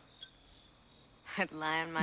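Faint crickets chirping in a quiet night ambience, then a voice starts speaking about a second and a half in.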